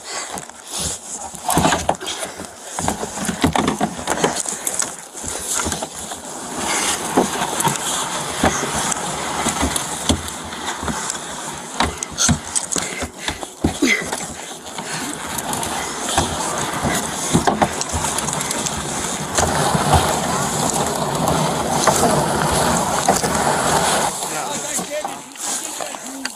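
Plastic kayak hull scraping and crunching across thin ice, with many sharp knocks as screwdrivers are jabbed into the ice to pull the kayak along; the grinding gets thicker and steadier near the end.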